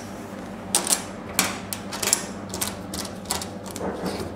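Irregular sharp clicks and light metallic taps, about seven of them, from small metal fittings being handled while an IR liquid cell is put back together by hand.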